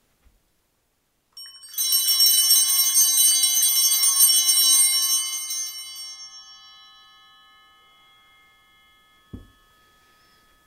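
A set of altar (sanctus) bells shaken rapidly for about four seconds at the elevation of the chalice, then left to ring out and fade slowly. A light thump near the end.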